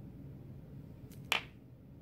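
A single sharp click about a second and a half in, over a low steady room hum.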